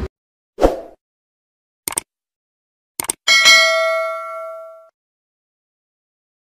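Subscribe-button animation sound effects: a short thump, two quick clicks, then a bell-like notification ding that rings out and fades over about a second and a half.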